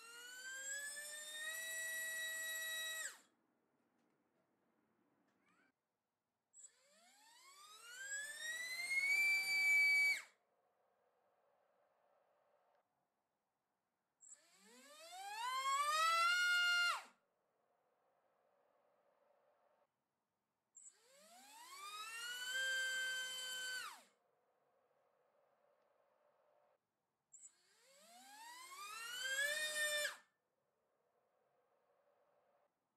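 iPower iF1606-4100KV brushless motor on a thrust stand spinning a propeller up to full throttle: a whine that climbs in pitch over about two seconds, holds briefly, then cuts off suddenly. Five such runs about six seconds apart, each with a different propeller.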